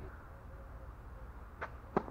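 Tennis racket striking the ball on a serve: one sharp pop near the end, with a fainter tap about a third of a second before it.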